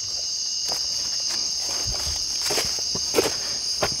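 A steady, high-pitched, unbroken chorus of night insects, with a few faint footsteps on dry leaf litter and stones.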